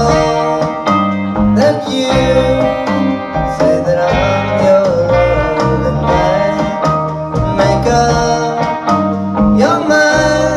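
Small band playing live: electric guitars, electric bass, keyboard and drums in a country-tinged early-1960s pop song, with a steady beat.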